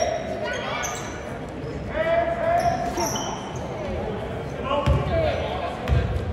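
Live basketball play in a gym: the ball bouncing on the court, with a strong thump about five seconds in. Short high sneaker squeaks and voices echo through the large hall.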